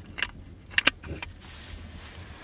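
Gloved hands handling a SIGMA A 50mm F1.4 DG HSM lens: cloth rubbing on the barrel with a few small clicks, the loudest a quick double click a little before the middle.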